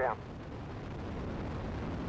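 Space shuttle Endeavour's launch rumble: the solid rocket boosters and main engines running during ascent, a steady low rushing noise with no break.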